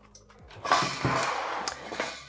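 Handling noise from the opened case of a 1972 Sanyo G-2607 portable stereo as it is lifted and tilted upright on the bench: a rustling scrape with a few clicks, starting about half a second in.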